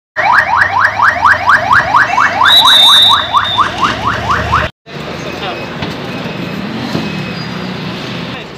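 A patrol vehicle's siren sounding a fast yelp, about five rising sweeps a second. It is loud and cuts off suddenly after about four and a half seconds, leaving steady road noise.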